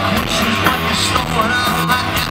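A rock band playing live through a festival PA, with electric guitar and sung vocals over drums, heard from among the crowd.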